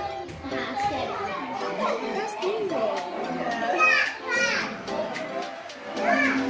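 Children chattering and calling out excitedly, with music playing in the background.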